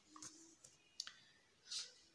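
Near silence: room tone with a single faint click about a second in.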